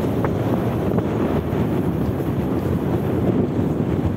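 Wind buffeting the microphone while travelling along a road on a vehicle, a steady low rumble with the vehicle's running noise underneath.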